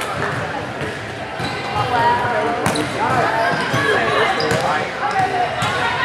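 Players and spectators calling out and chattering, echoing in a gymnasium, while a volleyball is served and hit, with a sharp smack of the ball about halfway through.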